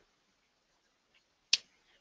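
Near silence in a pause of speech, broken by one short, sharp click about one and a half seconds in.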